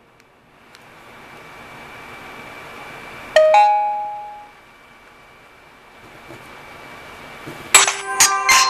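A Huawei Mercury smartphone's speaker gives a single short chime that rings out for about a second, about three seconds in. Near the end it starts a jingle of several bright chiming notes as the phone powers off.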